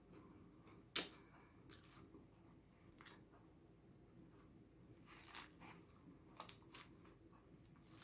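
Faint clicks and scrapes of a fork picking at salad in a takeout food container, the sharpest about a second in, with quiet chewing between.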